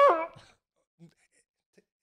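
A man's short, high-pitched vocal squeal that rises and then falls in pitch over about half a second, followed by near silence.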